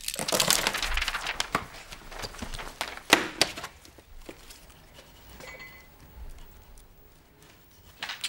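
Clattering and rustling of small objects being handled, with two sharp clicks about three seconds in. Then quieter clicks from a cordless phone's keypad being pressed, with a short electronic beep.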